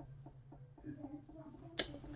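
Quiet room with a low steady hum and faint small handling sounds, then one sharp click near the end.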